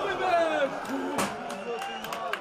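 Football stadium crowd and players' voices, several people shouting over one another from the pitch and stands, with a sharp knock a little over a second in.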